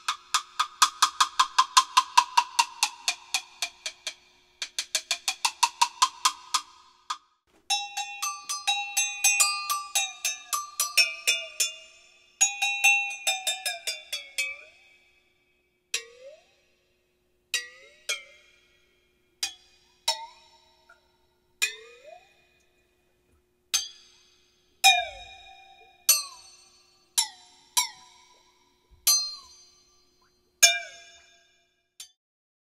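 Agogo bells struck with a stick while being dipped into a tub of water, the water bending the pitch of the ringing metal. Fast rolls of strikes come first, their pitch sliding down and then back up. After that come single strikes every one to two seconds, each ring gliding upward in pitch.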